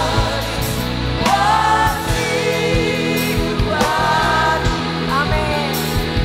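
Live worship band: a woman leads the singing of an Indonesian worship song with backing singers, in long held phrases over electric guitar, bass and a steady beat.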